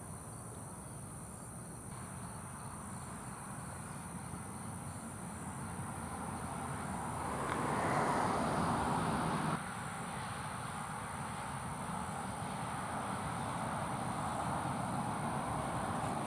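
Outdoor dawn ambience: a steady high-pitched insect chorus over a low rumble of distant road traffic. A rushing noise builds about six seconds in and cuts off suddenly a few seconds later.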